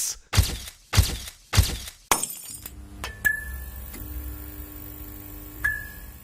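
Four sharp chops of a lever-arm cutter blade coming down, about half a second apart. Then a steady low hum, broken by two sharp glassy hits with a brief ringing tone, before it fades out.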